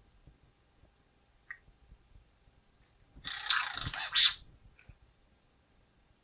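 Lightsaber hilts being handled and reassembled: a few faint clicks, and about three seconds in a louder burst of sound lasting about a second.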